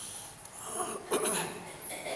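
A man's wheezy breathing and throat-clearing between verses, with a sudden louder catch about a second in.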